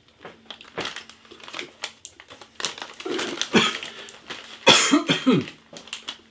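Crisp rolled tortilla chips (Takis Fuego) being crunched while chewing: a run of sharp little cracks, then a loud cough about three-quarters of the way through, followed by a few rough throat sounds.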